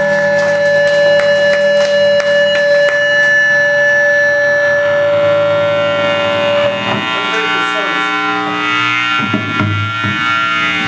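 Live band of electric guitar, bass and drums playing loudly. Held tones ring out over sharp drum hits in the first few seconds, and the sound turns into wavering, bending pitches in the second half.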